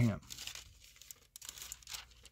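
Thin Bible pages rustling and crinkling faintly in irregular little crackles as the book is handled.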